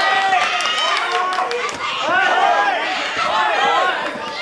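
Several people shouting at once from around a kickboxing ring, overlapping calls that run on without a break.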